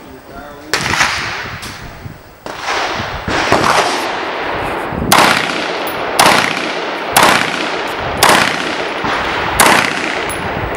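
Carbine firing a string of about ten single shots at a steady pace of roughly one a second, each crack followed by a short echoing tail.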